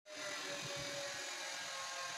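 Steady faint hiss of room noise, with a few soft low thumps a little over half a second in.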